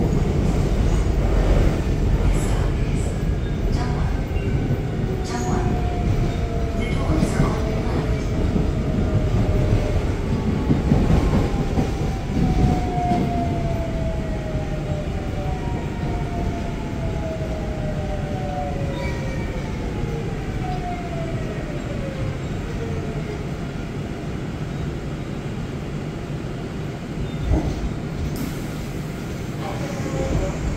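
Subway car's GEC Alstom GTO VVVF inverter drive whining in several falling tones under the rumble of the car on the track, as the train brakes and slows into a station. The rumble gradually gets quieter, and there is a short knock near the end.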